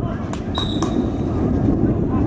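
Sounds of an outdoor basketball game: a steady low rumble, two sharp knocks, and a brief high squeak about half a second in.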